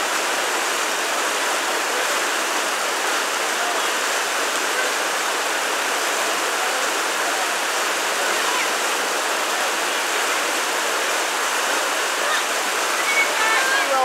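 Creek water rushing steadily down a broad, sloping natural rock slide, a constant even wash of flowing water.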